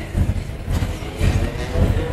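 Concert band performance: heavy, low pounding beats about twice a second, with hissing sounds above them.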